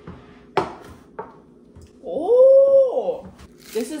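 A light knock as a dish is set down on the table, then about two seconds in a drawn-out vocal sound that rises and falls in pitch for about a second and a half.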